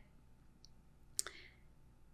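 Quiet room tone with one short, sharp click a little over a second in, followed by a brief faint hiss.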